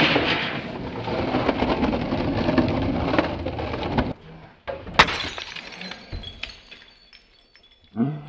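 Skateboard wheels rolling down a rough concrete bank, a loud gritty rumble that stops abruptly about four seconds in. A single sharp clack of the board follows about a second later.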